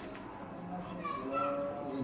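Faint voices of children talking and playing in the background, during a lull in the main speech.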